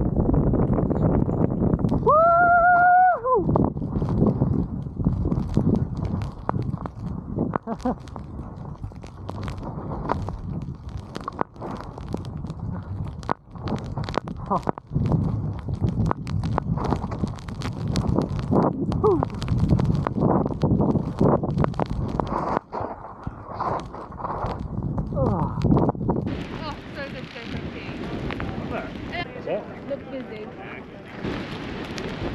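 Skis turning through deep powder snow: a muffled rush with irregular knocks and wind buffeting the microphone. About two seconds in, a short high yelled whoop that rises, holds and drops; near the end the rush turns brighter and hissier.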